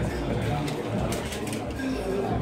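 Indistinct talk from people in the background: low voices, with no clear words.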